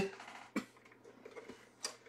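A few faint, separate clicks and light taps of a plastic football helmet being handled and turned over, the sharpest one shortly before the end.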